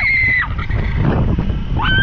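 A woman's long, high scream ends about half a second in, then wind rushes on the microphone, and a second high scream starts near the end, as the riders drop away on a zipline.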